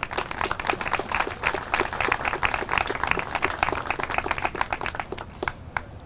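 A small crowd applauding, many hand claps together, thinning out and stopping near the end.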